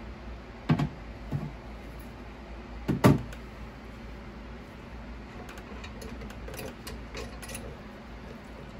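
A few knocks and clicks of hard plastic being handled: the wash container and print holder of a resin wash-and-cure station being moved and lifted. The loudest knock comes about three seconds in, and lighter clicks follow over a steady low hum.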